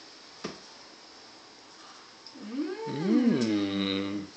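Baby vocalizing: a drawn-out sound that swoops up and down in pitch for nearly two seconds in the second half, settling low and steady before it stops. A single light click about half a second in.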